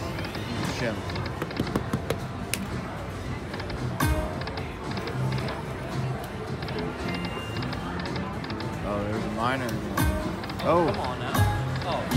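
Dragon Link slot machine spinning its reels several times in a row, with its electronic game music and reel-stop sounds, over casino background chatter and the sounds of other machines.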